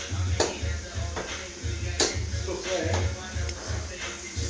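Background music with a steady, pulsing bass beat, with two sharp knocks, one about half a second in and one about two seconds in.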